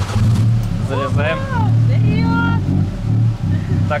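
Tuk-tuk engine running with a steady low drone as the auto-rickshaw drives along the street. A brief higher tone sounds over it about two seconds in.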